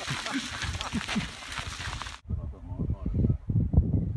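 Outdoor hiss, such as wind on a phone microphone, with indistinct voices; about two seconds in the hiss cuts off abruptly, leaving a duller low rumble and muffled talk.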